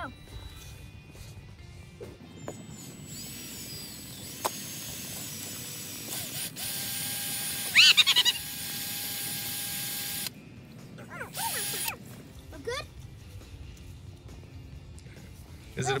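Cordless drill boring a tap hole into a maple trunk, its motor whining steadily, growing louder partway through and stopping abruptly near the middle. A child's excited shriek rises over the drill about eight seconds in.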